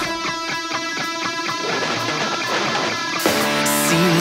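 Rock song breakdown: an electric guitar alone picks a repeating figure with the bass and drums dropped out and the sound thinned. The full band comes back in near the end.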